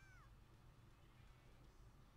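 The falling end of a faint cat meow in the first moment, then near silence with only a low room hum.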